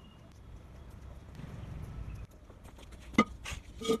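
A handful of sharp knocks and scuffs as a ceramic pot and a wooden stool are set down on concrete and someone shuffles into place. The loudest knock comes a little after three seconds in.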